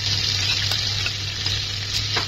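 Wet spice masala with a little water sizzling and bubbling in hot mustard oil in a pan: a steady hiss with a few faint pops.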